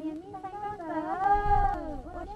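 A woman calling out with her hands cupped around her mouth: a long, wavering, high-pitched call that bends up and down in pitch.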